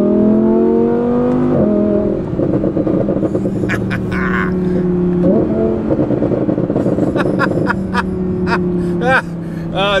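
Audi R8 V10 Plus's V10 engine heard from inside the cabin, revving up with rising pitch and dropping sharply at an upshift about a second and a half in. A fast crackle from the exhaust follows for several seconds, with another gear change partway through; the exhaust valves are open.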